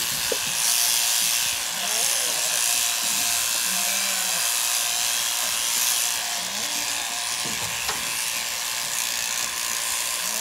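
Flexible-drive electric shearing handpiece running steadily, its cutter working back and forth across the comb as it shears through the fleece.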